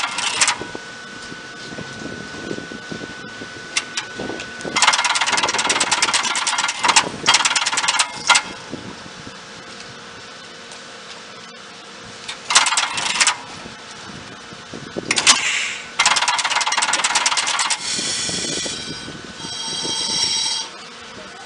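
Underfloor control equipment of an Ichibata Electric Railway 3000-series train operating: its contactors and relays switch in a series of rapid buzzing, clattering bursts, each about one to two seconds long, with sharp single clicks between them. A pitched whine is heard near the end.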